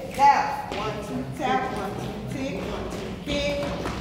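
Indistinct voices talking in a large hall, with light taps and thumps of shoes on the hard floor.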